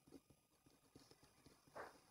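Near silence with faint, irregular small clicks and taps, and one brief louder sound near the end.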